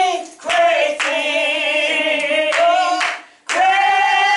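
A woman singing without accompaniment, holding long notes with a wavering vibrato and pausing briefly twice for breath, with some hand claps.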